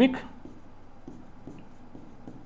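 Writing strokes on a board, a run of short soft strokes about three a second. The tail of a spoken word is heard at the very start.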